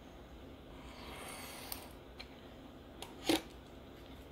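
A Venev diamond sharpening stone drawn lightly along a knife edge in a deburring stroke: a faint scrape about a second in. A sharp click follows a little after three seconds in.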